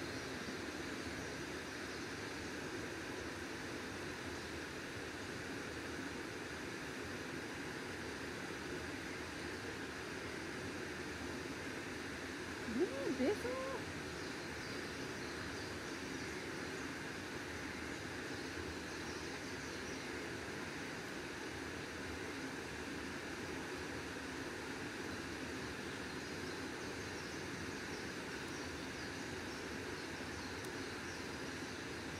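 Steady rush of a swollen, fast-flowing muddy stream. About thirteen seconds in, one brief pitched call that rises and falls a few times stands out over the water for about a second.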